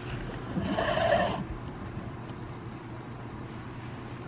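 A woman's short, breathy laugh about a second in, then only a low, steady background hum.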